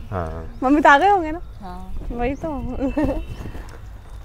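A woman's voice laughing and making short vocal sounds without clear words, the loudest peal about a second in.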